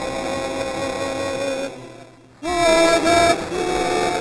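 A congregation singing together, holding a long note that fades away about two seconds in; after a short pause the singing starts again, louder.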